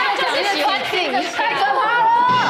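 Only speech: people talking.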